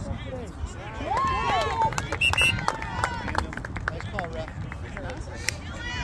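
Young soccer players shouting and calling out across the field, loudest from about one to three and a half seconds in, with a few sharp knocks and a low steady rumble.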